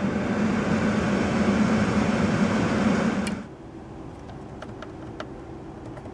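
Car climate-control blower fan running at a high setting, a steady rushing hiss with a low hum, that suddenly drops to a much quieter level about three and a half seconds in as the fan speed is turned down. A few faint button clicks follow.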